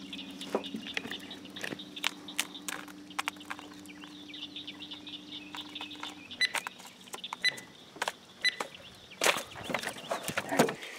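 Birds chirping, with scattered knocks and clicks from line and gear being handled in a small boat, louder near the end. A low steady hum stops about six seconds in.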